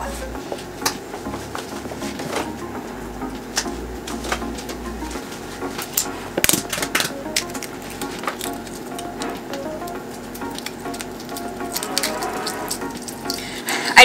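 Soft-boiled eggshell crackling and clicking as it is cracked and peeled off by hand: a run of small irregular clicks.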